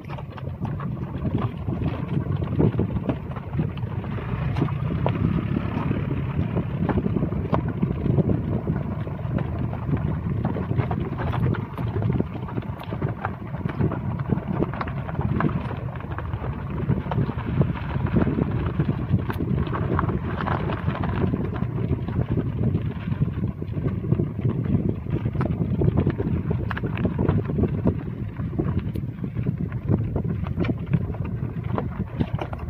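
Wind buffeting the microphone: a loud, unpitched low rumble with constant flutter and gusty surges.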